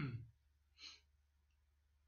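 A man's voice trails off at the very start, then one short audible breath about a second in; otherwise near silence.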